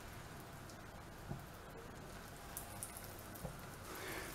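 Breaded turkey patties frying in hot oil in a pan, a faint steady sizzle with a few soft crackles and taps as more patties are laid in.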